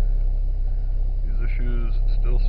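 Mitsubishi Eclipse's 1.8-litre 4G37 four-cylinder idling, a steady low rumble heard from inside the cabin.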